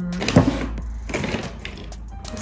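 Paper takeaway bag rustling and crinkling as it is grabbed and lifted, in irregular bursts, the sharpest about half a second in.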